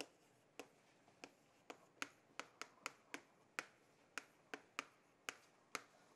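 Chalk on a chalkboard as words are written by hand: a quick, irregular run of light, sharp taps and clicks, about three a second, as the chalk strikes and lifts between strokes.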